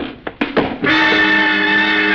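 A few short, sharp sounds in the first second, then a radio-drama music sting: a loud sustained chord that comes in a little under a second in and holds, marking the murder just committed.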